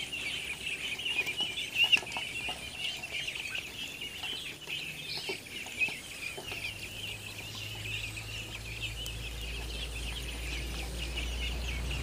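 A large flock of Khaki Campbell ducklings peeping continuously in a dense, overlapping chorus. A couple of brief knocks sound in the first half, and a low rumble builds in the second half.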